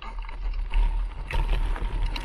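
Wind buffeting an action camera's microphone during a bicycle ride: a steady low rumble with scattered clicks and rattles from the moving bike.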